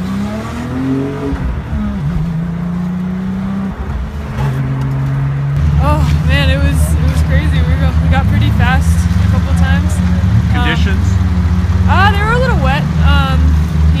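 Car engine heard from inside the cabin, rising in pitch as the car accelerates over the first second or two, then holding a steady drone that gets louder from about six seconds in as it climbs the wet hill-climb road.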